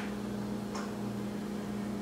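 A steady low hum, with one faint, short, high sound under a second in.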